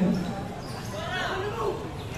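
A basketball bouncing on a concrete court during play, under shouting voices of players and spectators, loudest at the start and again about a second in.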